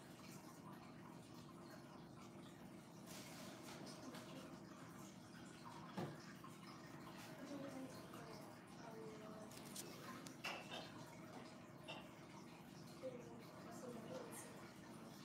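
Quiet room with faint voices in the background and a couple of soft clicks.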